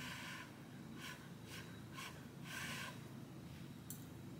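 Faint breathing, about five short soft puffs of breath, as a forkful of food is brought to the mouth, with a small sharp click near the end.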